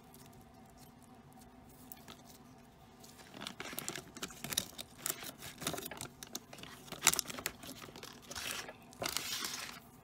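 Plastic packaging being handled, crinkling and crackling in irregular bursts after a few quiet seconds, with a sharp crackle partway through and a longer rustle near the end.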